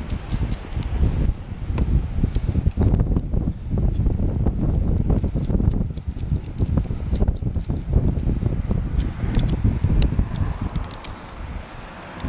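Gusty wind buffeting the microphone, with many short metallic clicks and clinks of carabiners and climbing hardware being handled at a belay anchor.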